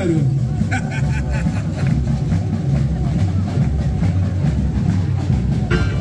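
Samba parade band: a loud, deep drum rumble carries on while the sung melody drops out, with a few short brighter hits about a second in; pitched singing or instruments come back near the end.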